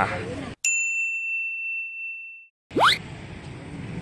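A single bright ding, an edited-in sound effect, ringing out and fading over about two seconds against dead silence. It is followed by a quick rising whoosh as the street background comes back.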